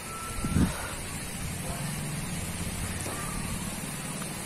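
A steady low engine hum, with a short high beep near the start.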